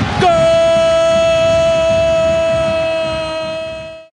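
A football commentator's long, sustained goal cry, a single "gooool" held at one steady pitch for nearly four seconds and fading out at the end.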